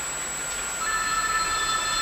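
A phone ringing: a steady electronic ring tone starts about a second in, over the hush of the room.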